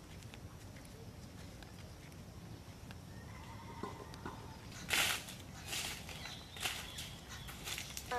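Footsteps crunching on dry leaves and grass, a slow walking pace of about one step a second, starting about five seconds in; the first step is the loudest.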